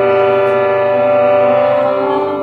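Bhajan accompaniment holding a steady drone: several notes sounding together and sustained without change, with no singing.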